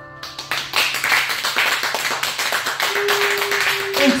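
Audience applauding as the last chord of a banjo and keyboard song dies away; the clapping breaks out a moment in and keeps going.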